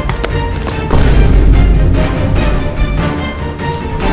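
Background music with a steady beat, the bass swelling louder about a second in.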